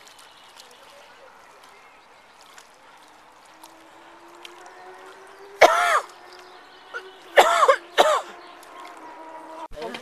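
Three short, loud pitched calls, about five and a half, seven and a half and eight seconds in, over a quiet steady background.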